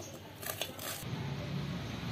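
Soft rustling and scraping of a hand tossing rice-flour-coated yam cubes in a steel bowl, in the first second; then a faint steady low hum.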